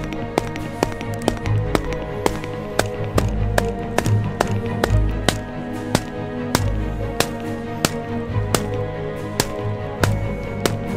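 Background music with sustained notes, over sharp taps about two a second from a wooden mallet driving a split wooden peg into reed thatch.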